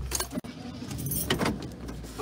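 A car's engine running at a low, steady hum inside the stationary car, with a few light clicks and rattles in the cabin.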